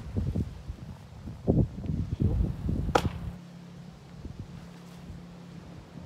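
Rustling of body and clothing movement, then a single sharp slap about three seconds in: a fist striking into the open palm as the hands close for a martial-arts salute.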